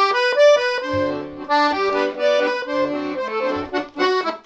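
Piano accordion playing a melody in a run of separate notes on the right-hand keys, with a few low notes sounding beneath.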